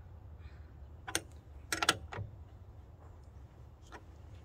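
A few sharp metallic clicks and taps of a wrench working the bolt of a military-style battery terminal clamp: one click about a second in, a quick cluster just before two seconds, and one more soon after. A low steady hum runs underneath.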